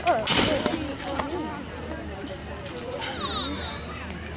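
A loud rattling hit shortly in, as the baseball strikes the chain-link backstop fence, followed by young players and spectators calling out.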